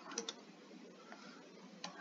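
A few faint, light ticks of a stylus tapping a tablet screen while handwriting: two close together just after the start and one near the end, over quiet room tone.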